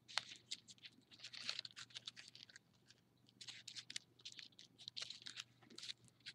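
Folded paper of an origami heart crinkling and rustling faintly as fingers press down and tuck in its flaps, in bunches of small crackles with a short quiet stretch midway.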